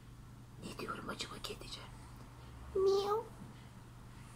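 Soft breathy, whisper-like sounds, then about three seconds in one short meow of about half a second, steady in pitch.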